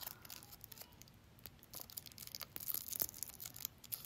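Faint crinkling and small clicks of a needle packet being handled and opened by hand, busiest about two and a half to three seconds in.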